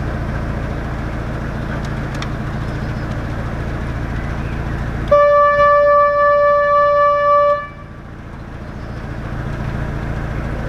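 A narrowboat's horn sounds one long, steady blast of about two and a half seconds, about five seconds in, over the boat's diesel engine running slowly throughout. Just after the horn the engine drops quieter, then builds back up.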